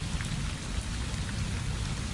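Steady outdoor background noise: an even rushing hiss with a low rumble underneath.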